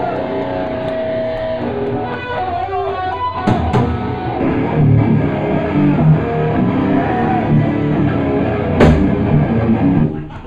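Death metal band playing live: distorted electric guitars with drums and a few cymbal crashes. The music breaks off suddenly right at the end.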